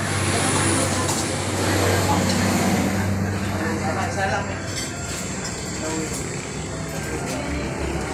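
Busy eatery ambience: several people talking indistinctly over a steady low hum.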